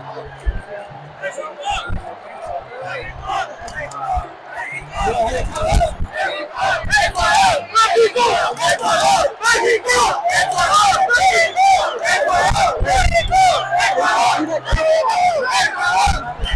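Stadium crowd of soccer fans shouting: a lower murmur at first, swelling about five seconds in to loud, sustained massed shouting, with many sharp claps and hits mixed in.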